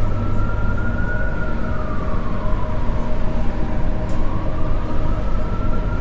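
An emergency vehicle siren wailing slowly, rising, falling and rising again, over a steady low rumble of city traffic.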